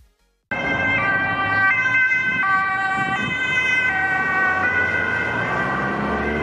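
Dutch ambulance's two-tone siren, switching between a high and a low note about every three-quarters of a second, over the noise of a passing vehicle. It cuts in suddenly about half a second in.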